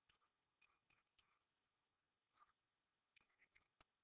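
Faint taps and short scratchy strokes of a stylus writing on a tablet screen, coming in irregular clusters, the strongest stroke about halfway through.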